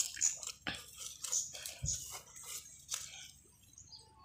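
Faint irregular scraping and crunching as a clay tile is shifted over dry leaf litter and soil. It opens with a sharp knock and has a soft thud about halfway through.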